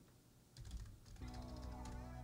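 Faint typing on a computer keyboard, starting about half a second in, with quiet background music coming in about a second in.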